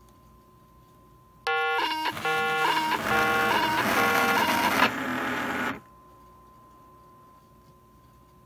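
Two Long Range Systems restaurant coaster pagers going off together, sounding a warbling pattern of electronic beeps that steps between pitches. It starts about one and a half seconds in, lasts about four seconds and cuts off suddenly. The pagers are answering a paging data packet transmitted to them by a HackRF One software-defined radio.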